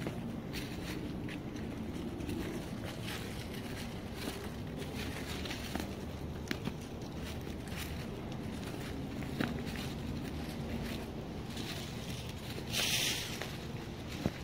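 Footsteps crunching through dry fallen leaves on a woodland path, walking at an even pace, with a louder rustling burst near the end. A low steady rumble sits underneath.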